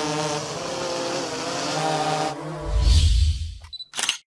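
Quadcopter drone's rotors humming steadily as it hovers, the pitch wavering slightly about two seconds in. It is followed by a loud low rush of noise that fades out just before the end.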